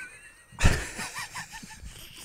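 A man chuckling softly in short breaths, with a single thump about half a second in.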